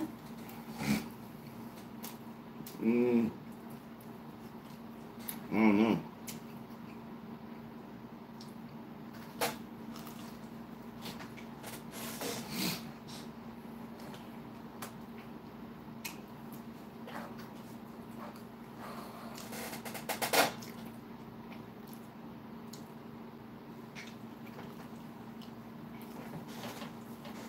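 Mouth sounds of a man eating pizza, with two short hummed "mm" sounds of about a second each early on, a few sharp clicks, and a steady low hum underneath.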